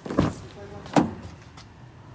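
Pickup truck door being worked by its handle: two sudden clunks about a second apart, the first a short rattling clunk of the latch and the second a sharper, louder thud.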